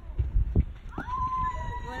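A person's long high call, gliding up and then held level for about a second near the end. It comes over uneven low rumble.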